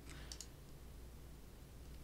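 A few faint computer mouse clicks near the start, over quiet room tone with a low steady hum.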